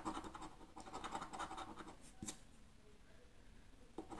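A coin scraping the coating off a scratch-off lottery ticket in quick, faint strokes, with a single click a little over two seconds in, after which the scraping goes quieter.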